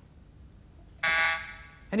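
A quiz-show electronic time-up buzzer sounds once. It is a steady pitched tone that starts suddenly about a second in, holds for about half a second and then dies away.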